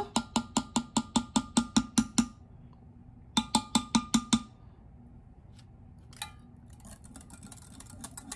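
A silicone spatula knocking quickly against a glass Pyrex measuring cup of thick cream, with a faint ring from the glass. About a dozen rapid clicks come first, then after a pause a shorter run of about six.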